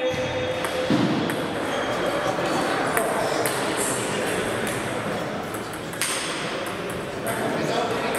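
Table tennis balls clicking irregularly off tables and bats from several games at once in a busy sports hall, over a steady background of voices.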